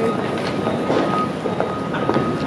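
City street ambience: a steady hubbub of traffic noise and indistinct voices of passers-by, with short taps and clicks throughout.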